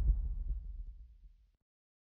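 Deep bass rumble from the tail of the logo sting, fading out and gone to silence about a second and a half in.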